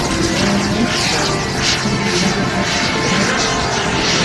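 Turbine engine of a radio-controlled model jet in flight, a steady rushing hiss that swells as the jet passes, with music playing alongside.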